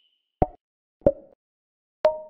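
Logo-animation sound effects: two short cartoon pops about two-thirds of a second apart, each with a brief ringing tail.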